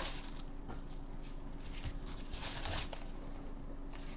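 Soft rustling and crinkling of a padded paper mailer and the paper inside it as they are handled and the contents are pulled out, in a few scattered bursts.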